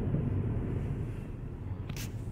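Steady low road and engine rumble heard inside a moving car's cabin, with a brief click near the end.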